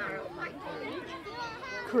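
Overlapping chatter of nearby spectators, with children's voices among them; no one voice carries clear words.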